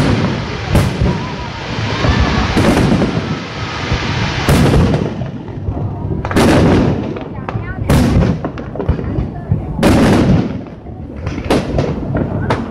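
Aerial firework shells bursting in a public fireworks display: about seven loud booms, one every second and a half to two seconds, each with a rolling echo.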